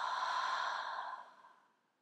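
A woman's long, breathy exhalation through the open mouth, a whispered "haaa" sigh without voice, fading out about a second and a half in. It is a slow release of breath in a yogic relaxation breathing exercise.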